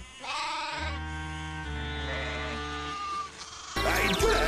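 Cartoon sheep bleating: a wavering "baa" shortly after the start, over music with sustained low notes. The sound changes abruptly to a louder, busier passage near the end.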